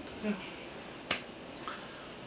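A quiet spoken 'eung' of assent, then a single short, sharp click about a second in, over low room tone.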